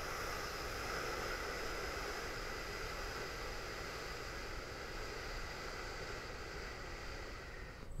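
One long, slow exhale close to a clip-on microphone, a steady breathy hiss that fades a little toward the end, taken during a held neck stretch.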